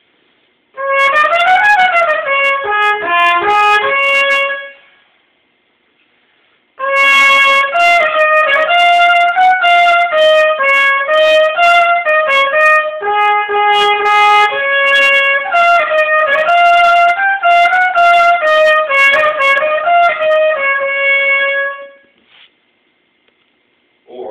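Trumpet playing in its upper register, where the notes of the harmonic series lie close enough together for a scale. It plays a short run up and back down, then after a brief pause a longer stepwise melody lasting about fifteen seconds.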